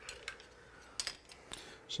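Metal fork and spoon clinking against mussel shells and the serving bowl: a few light, separate clicks, the loudest pair about a second in.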